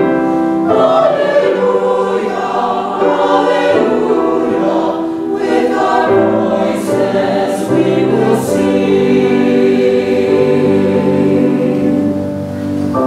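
Church choir singing a sacred anthem in parts, with sustained sung chords. A little past the middle, three crisp 's' consonants come through together.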